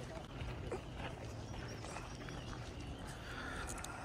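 Faint outdoor ambience: a distant murmur of voices, scattered light clicks and crunches, and a low wind rumble on the microphone.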